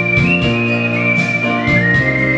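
Instrumental break in a song's backing track: a high, pure-toned lead melody stepping slowly down over sustained low chords and plucked guitar.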